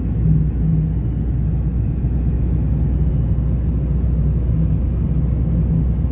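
Steady low rumble of a moving car heard from inside the cabin: road and engine noise while driving.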